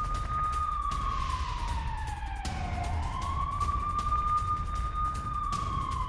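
A siren wailing: one tone that slowly sinks in pitch from about a second in, bottoms out near the middle, then climbs back and holds, over a low steady rumble.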